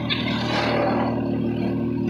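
Engine and road noise heard from inside a moving passenger vehicle: a steady low engine hum, with a rush of noise that swells about half a second in and fades over the following second.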